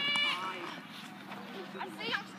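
A child's voice holding a long, high-pitched drawn-out cry that stops about a third of a second in, followed by faint background noise.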